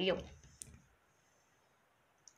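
A woman's short spoken word, then a faint, brief click with a couple of lighter ticks about half a second in, and then quiet room tone.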